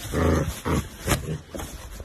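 An animal calling in short pitched bursts: a loud first call about half a second long, then three or four shorter, weaker ones.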